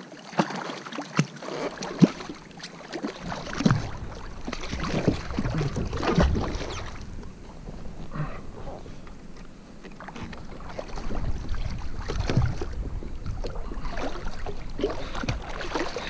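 Water splashing and sloshing against a kayak hull as a hooked wahoo thrashes alongside, with scattered sharp knocks. Wind rumbles on the microphone from about three seconds in.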